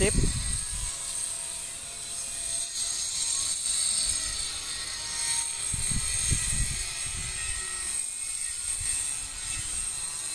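Outdoor ambience: a steady high-pitched hiss or buzz, with uneven low rumbling on the microphone.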